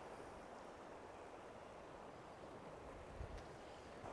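Near silence: a faint, steady background hiss, with one soft low thump a little past three seconds in.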